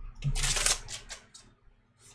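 A stack of Topps Allen & Ginter baseball cards slid and shuffled between the hands: a brief rustle of card stock in the first second, then a few faint flicks.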